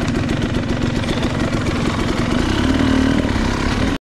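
KTM two-stroke dirt bike engine running at low revs as the bike creeps along, with an even, rapid pulse. The revs lift briefly about two and a half seconds in.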